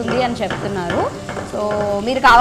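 A wooden spatula stirs a sizzling masala in a frying pan. Over it a person's voice makes drawn-out sounds, with a rising glide about a second in and a steady held tone near the end.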